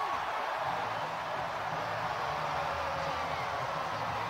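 Large stadium crowd cheering a home-team touchdown: a steady, unbroken wash of many voices, with a low drone joining in underneath about half a second in.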